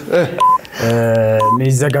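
Game-show countdown clock beeping once a second, a short high beep each time, twice here, under a man talking.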